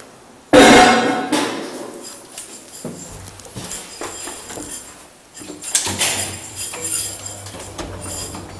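Elevator door banging shut with a rattle that dies away over a second or two, followed by scattered clicks and knocks. Near six seconds a sharp click comes, and a low steady hum from the hydraulic elevator's machinery sets in.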